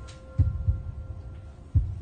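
Two dull low thumps about a second and a half apart, with a faint held tone fading out underneath.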